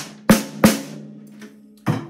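Snare drum struck with a stick four times, the last near the end, each hit leaving a ringing low tone that slowly dies away. It is a test hit partway through tuning, with the head slackened on several tension rods and one rod fully loosened.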